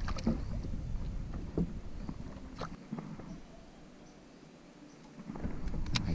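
A small silver croaker (curvina) splashing at the water's surface as it is released from the boat, then low wind rumble on the microphone and faint water noise with a few light clicks, one sharper near the end.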